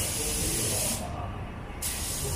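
Aerosol spray hissing in bursts, one for about the first second and another starting near the end, aimed at the motorcycle's rear drive chain.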